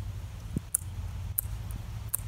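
A few short, sharp clicks from the bar and chain of a cordless chainsaw being handled while its chain tension is checked and adjusted, over a steady low rumble.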